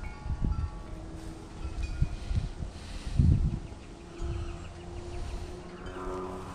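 Wind chimes ringing: several clear tones at different pitches sound one after another, hold and fade, over a low rumble.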